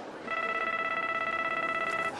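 Mobile phone ringing: one steady electronic ring tone with a rapid fine flutter, starting about a quarter of a second in.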